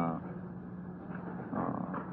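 A pause in a man's speech: only a low, steady background hum under faint noise, with the last of a spoken "uh" at the start.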